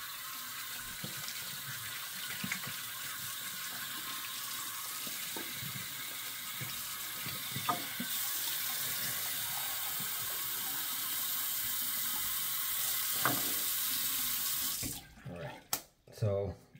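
Bathroom sink tap running while hands are rinsed under it, a steady splashing flow that grows stronger about halfway through and is shut off near the end.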